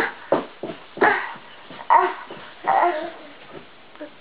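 A toddler making short, loud dog-like yelps, about four of them roughly a second apart.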